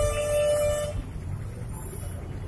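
A vehicle horn sounds one steady note that stops about a second in, over the low rumble of road traffic.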